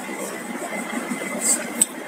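Steady background noise in a pause of a voice recording, with a faint steady high tone and two brief clicks near the end.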